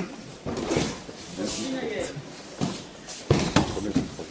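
Thuds of feet and bodies on tatami mats during an aikido throw, ending in two sharp slaps about three and a half seconds in as the thrown partner hits the mat in a breakfall.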